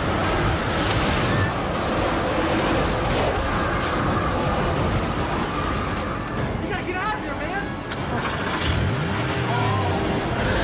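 Film sound mix of a tornado striking a city: a dense, steady roar of wind and flying debris under dramatic music, with a few brief voices in the second half.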